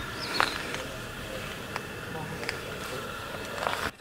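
Steady wind rushing over the camera microphone, with a few faint clicks.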